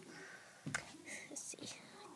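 Faint whispering, with one light click of handling a little over a third of the way in.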